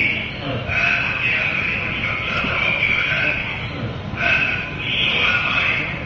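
A man's voice coming through a mobile phone's earpiece speaker, picked up by a microphone held against the phone: thin and tinny, squeezed into a narrow band, the words hard to make out.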